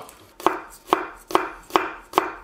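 Kitchen knife slicing garlic cloves on a wooden cutting board: four even knife strikes about two a second, each with a short ring.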